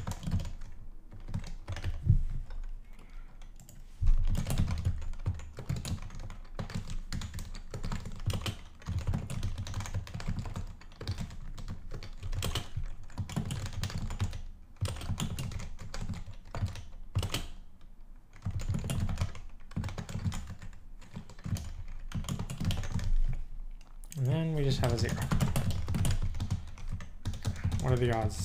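Computer keyboard typing: rapid, irregular keystrokes in runs with short pauses. A brief hum of voice comes in about three-quarters of the way through.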